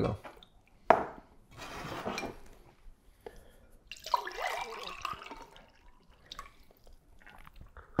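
Water poured from a plastic jug into a cut-glass tumbler, splashing and filling for about a second and a half midway through. Before it there is a sharp click about a second in and some rustling handling.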